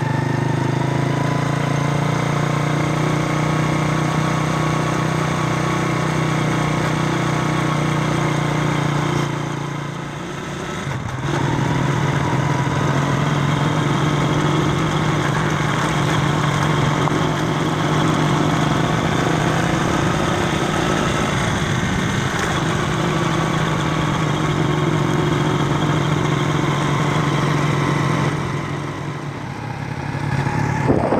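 Engine of a moving vehicle running steadily on a rough mountain road, its note dropping away briefly about ten seconds in and again near the end before picking back up.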